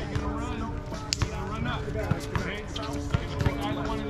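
A basketball bouncing on an outdoor hard court during a pickup game, with several sharp bounces, under players' voices and background music.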